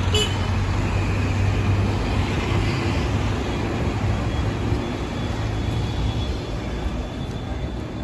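Road traffic passing: a steady mix of engine and tyre noise with a low rumble, easing off slightly toward the end. A brief high-pitched toot comes right at the start.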